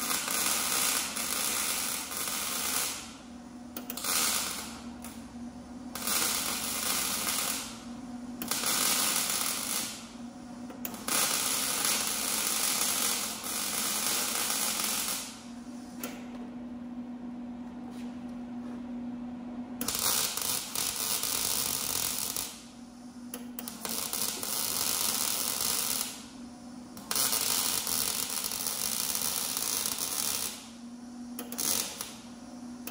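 Wire-feed (MIG) welder laying beads on a steel frame: a steady crackling arc in runs of one to four seconds, about eight in all, with short pauses between them and a longer break of about four seconds in the middle. A low steady hum shows through in the pauses.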